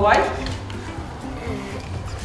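A child's voice trailing off in the first moment, then quiet classroom voices over soft background music.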